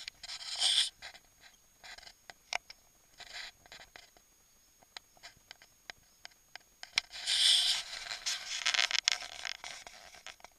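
Close-up handling noise: bursts of scraping and rubbing with scattered light clicks as the camera and plastic toy tractors brush against each other, loudest briefly just under a second in and again in a longer stretch from about 7 to 9.5 seconds.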